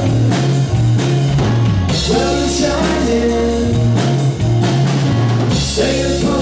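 Live rock band playing loudly: a drum kit beating a steady rhythm, electric guitar through a Marshall amp, and a male singer's vocal line.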